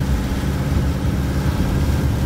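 Engine and road noise heard from inside a moving vehicle: a loud, steady rumble.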